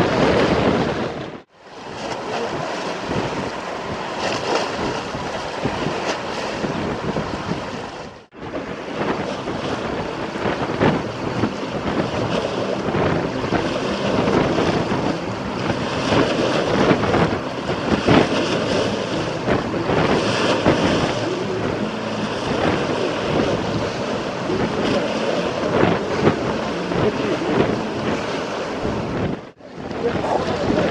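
Wind-driven waves breaking and washing against a concrete river embankment, with strong wind buffeting the microphone. The noise is loud and continuous, swelling at times, and cuts out briefly three times.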